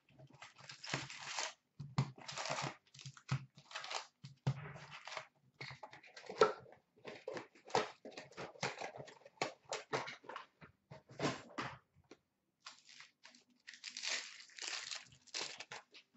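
Cardboard hockey card box being opened and its foil-wrapped packs pulled out and stacked, an irregular run of crinkling, rustling and cardboard scuffs. A denser stretch of crinkling comes near the end as a single pack is handled.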